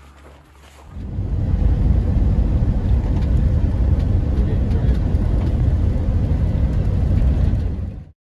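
Steady low rumble of road and wind noise heard from inside a moving vehicle, starting about a second in and cutting off suddenly at the end.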